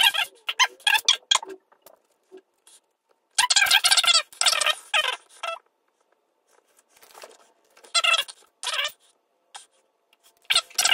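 A man's talking played back sped up, high-pitched and garbled, in three short bursts with pauses between.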